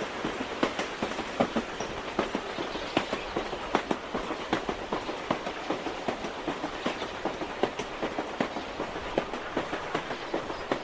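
Train in motion heard from inside a carriage: a steady rumble with frequent, irregular clicks and knocks of the wheels running over the rails.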